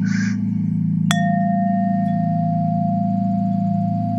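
A single chime struck about a second in, its clear tone ringing on steadily with a higher overtone that fades, over a steady low musical drone.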